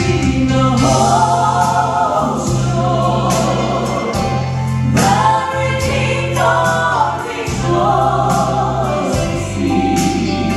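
Gospel trio of a man and two women singing in harmony through microphones over an instrumental accompaniment with a bass line and a regular percussive beat.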